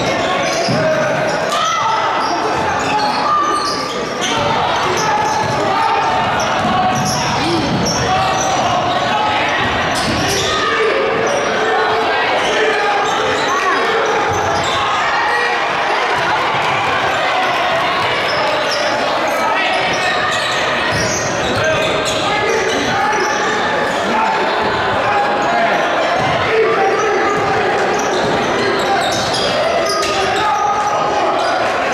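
Basketball dribbling and bouncing on a hardwood gym floor during live play, short knocks recurring throughout, over indistinct voices of players and spectators, all echoing in a large gymnasium.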